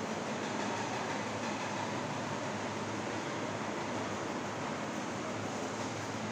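Steady room noise: an even hiss with a faint low hum, with no distinct events.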